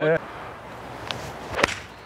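Golf club swung at the ball from the rough: a swish, then one sharp crack of the strike about a second and a half in.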